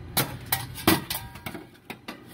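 Stainless steel battery tray being set into place in the engine bay, metal clinking and knocking against metal several times in quick succession, some of the clinks ringing briefly.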